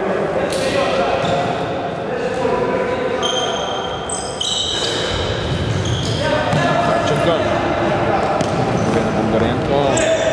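Futsal being played on an indoor court: trainers squeaking on the floor in short high squeals, the ball being kicked and players shouting, all echoing around the large hall.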